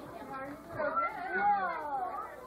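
A high, drawn-out vocal sound starting about a second in, its pitch gliding up and then sliding down.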